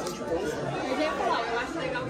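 Indistinct background chatter of several people's voices in a busy shop, no one voice close or clear.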